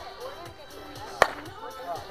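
A single sharp crack of a bat hitting a pitched ball about a second in, with a brief ring after it, over background music.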